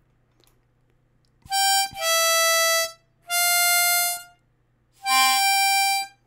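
A diatonic harmonica playing four single notes, starting about a second and a half in: a short first note, then three held for about a second each.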